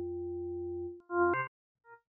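Pilot software synthesizer playing sequenced notes triggered by Orca: a steady tone held for about a second, a brief gap, a shorter brighter note with a click at its start, then a faint blip near the end.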